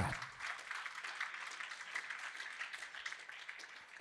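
Audience applauding, the clapping tapering off over about four seconds.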